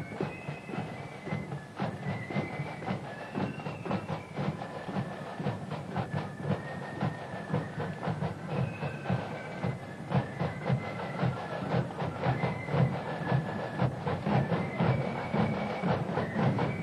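Marching flute band playing: flutes carry a melody over a steady, busy beat of side drums and bass drum.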